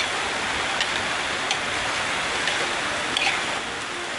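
Chicken and mixed vegetables sizzling steadily in a hot wok as they are stir-fried in a little liquid, with a few light scrapes and taps of the spatula against the pan.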